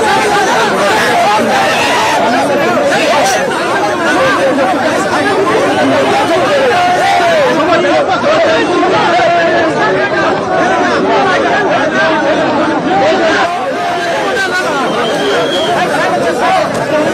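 A large crowd talking and calling out all at once: loud, dense, unbroken babble of many voices.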